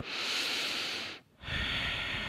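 A woman taking one deep breath close to a headset microphone: a breath in lasting about a second, a short break, then a longer breath out.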